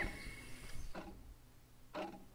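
Faint bird call: a single short rising-and-falling chirp right at the start, then a quiet pause with a few soft clicks and a faint high hiss.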